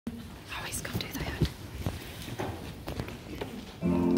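Low murmuring and whispering from an audience, with scattered small knocks and rustles. Just before the end, an accompaniment track starts with held, steady chords, noticeably louder.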